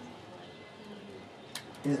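A bird cooing faintly under room noise during a pause in speech, with a single sharp click about a second and a half in.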